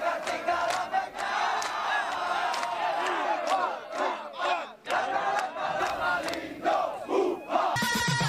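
A large group of soldiers shouting and cheering together, many men's voices overlapping in a loud, continuous chorus.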